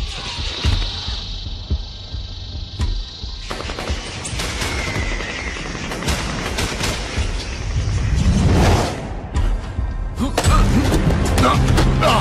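Action-film soundtrack: music under a rapid, dense flurry of sharp hits and bangs during a fight, with a swelling sweep a little past two-thirds through.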